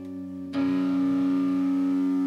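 Amplified electric guitar chord struck about half a second in and left ringing, held steady, over the tail of the previous chord; no drums under it.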